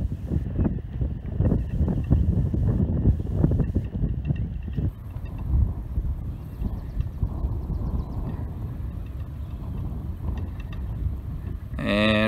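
Wind buffeting the microphone: an uneven low rumble that swells and drops with the gusts.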